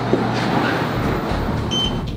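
A steady rushing noise with a low hum, and a short, high electronic beep near the end.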